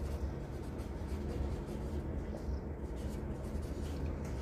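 Marker pen writing on a whiteboard: a series of faint strokes and rubs as words are written. A steady low hum lies underneath.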